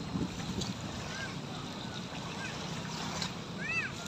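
Small waves of the bay washing against the shore, with a low background of distant voices and a few short, arching high-pitched calls, the loudest near the end.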